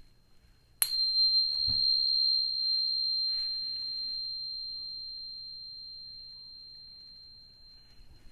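Tuning fork struck about a second in, ringing with one high, pure tone that fades slowly over the following seconds.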